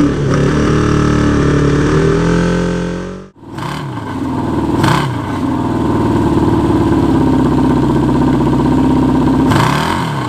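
Honda CB750's inline-four engine. It first revs up and down while running badly on dirty carburetors, which the owner reckons left it firing on only one or two cylinders. After a sudden cut about three seconds in, it runs steadily with two quick throttle blips, with its carburetors cleaned.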